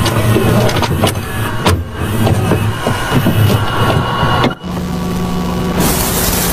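Sound effects imitating a VHS tape playing: a buzzing, crackling mechanical noise with scattered clicks, changing about four and a half seconds in to a steadier low hum, and ending in loud static hiss.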